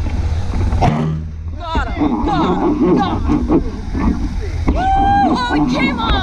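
A boat's motor running with a steady low hum, with people's voices over it and one long held call near the end.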